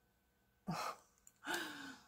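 A woman's short breathy vocal sound about two-thirds of a second in, then a longer sigh with a gently falling pitch near the end.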